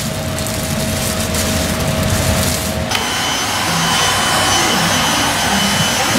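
Plastic bag crinkling as a door visor is unwrapped, over a steady hum. About three seconds in, the sound switches abruptly to a handheld heat gun blowing steadily, an even hiss with a thin high whine.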